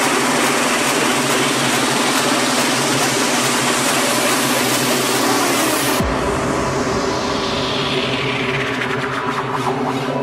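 Techno from a continuous DJ mix, at a build-up and drop: a dense hissing noise build with the bass held back cuts off sharply about six seconds in as a deep bass comes in, followed by a sweep falling steadily in pitch.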